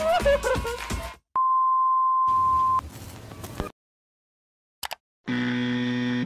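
Voices over music cut off about a second in, followed by a single steady high electronic beep lasting about a second and a half. Near the end comes a short low electronic buzz.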